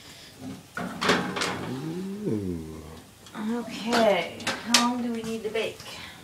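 A person's wordless voice, drawn-out hums or exclamations that rise and fall in pitch, with a few sharp clicks as a metal pizza pan is slid into the oven about a second in.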